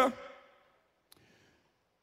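A pause in a man's speech through a microphone: his last word trails off in the room's echo, then near silence with one faint click about a second in.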